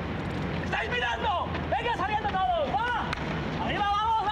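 Men shouting at one another on a football pitch over a steady low rumble of outdoor background noise.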